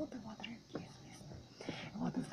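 A woman whispering quietly close to the microphone, breathy and without full voice.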